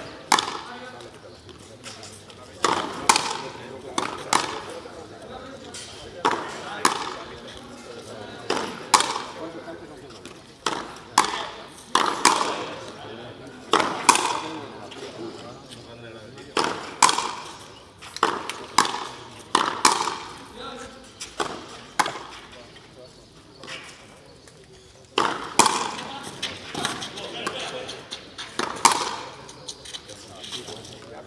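Frontenis rally: sharp cracks of the rubber ball struck by strung rackets and hitting the frontón wall, each with a short echo. They come in irregular runs about a second apart, some in quick pairs, with a lull of a couple of seconds between points.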